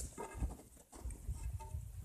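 Footsteps in snow: uneven low crunching thumps, with a few short squeaks underfoot.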